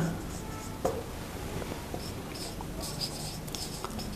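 Marker pen writing on a whiteboard: a series of short, scratchy strokes as words are written out.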